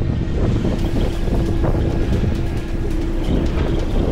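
Wind buffeting the microphone over the steady low rumble of a fishing boat on open sea, with background music and a single steady tone holding through most of it.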